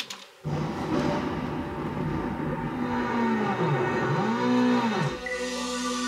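Self-made electronic synth track in a vaporwave/cyberpunk style playing back from the computer, starting about half a second in after a click. A low synth slides up and down in pitch in arcs, then gives way to steadier held chords near the end.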